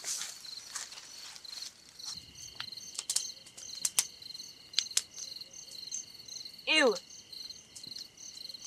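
Crickets chirping steadily at night in a rapid pulsed rhythm with a thin steady high tone underneath, with rustling near the start and a few sharp clicks in the middle. About seven seconds in, a short vocal sound falls in pitch.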